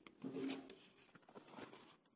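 Faint rustling and scattered small clicks from a hand handling the paper chart and camera, in a quiet small room.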